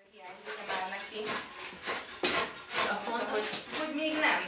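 Hand scrapers scraping old plaster off a wall: repeated irregular scratchy strokes, fading in at the start.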